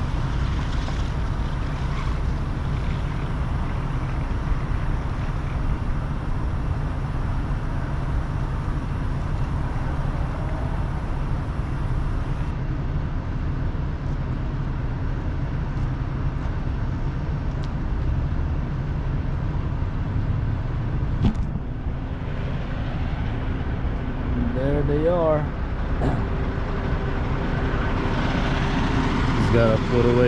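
Semi-truck's diesel engine idling with a steady low rumble. A few short chirps sound about 25 seconds in, and a man's voice starts right at the end.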